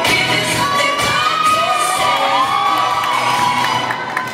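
Music for a dance routine playing, with the audience cheering and shouting over it; high calls rise and fall through the middle.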